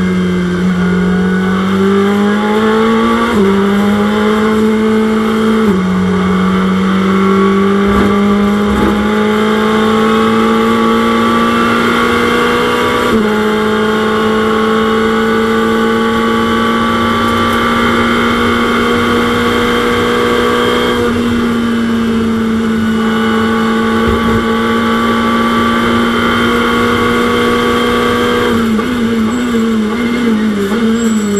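Onboard sound of a Ferrari 488 GT3's twin-turbo V8 racing engine under hard acceleration. Its pitch steps with gear changes over the first dozen seconds, then holds at high revs for a long flat-out stretch. Near the end comes a quick run of short pitch jumps, as on downshifts under braking.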